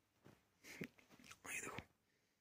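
Faint whispered speech in a few short, soft bursts.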